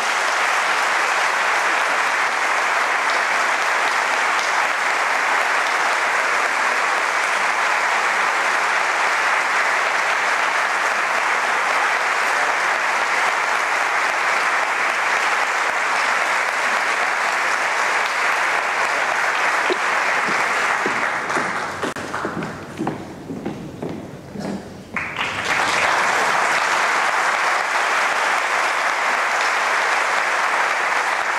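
Audience applauding steadily in a theatre after a sung duet; the clapping thins out about two-thirds of the way through, then comes back at full strength a few seconds later.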